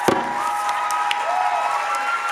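A sharp final hit on the djembe ends the song, then an audience applauds and cheers, with a long held whoop over the clapping.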